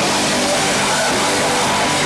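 Live band playing loud, distorted heavy rock with electric guitar, picked up by a camcorder's built-in microphone as a dense, unbroken wall of sound.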